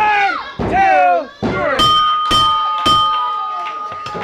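Wrestling ring bell struck three times in quick succession, about half a second apart, ringing on afterwards: the timekeeper signalling the end of the match after the three-count. Before it, shouting voices.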